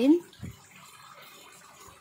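A person sniffing a flower up close: a faint, drawn-out inhale through the nose, with a soft bump of handling about half a second in.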